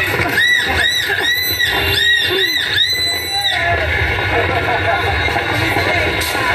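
A crowd of people talking and shouting over music, with a high melody of about eight short, bending notes in the first half.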